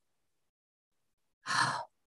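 Silence, then about one and a half seconds in a single short sigh, about half a second long, from a person about to answer a question.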